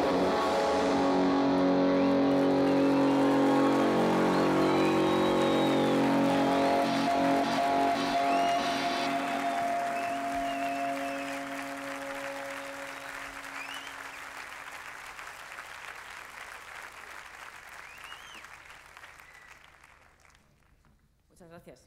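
Theatre audience applauding with a few whistles, over the band's last guitar chord ringing out. The chord fades away over about a dozen seconds. The applause is loudest for the first several seconds, then slowly dies down.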